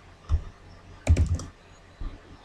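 Typing on a computer keyboard: a single keystroke about a third of a second in, then a quick run of four or five keystrokes around the one-second mark.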